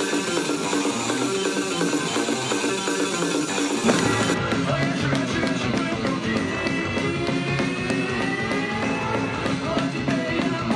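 Rock music with guitar, in a punk style; about four seconds in it fills out with a low end and a steady beat.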